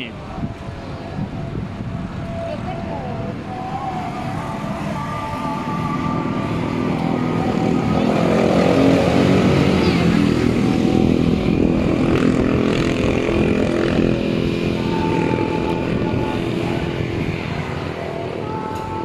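Street traffic: a motor vehicle's engine passing close by, growing louder towards the middle and then fading again.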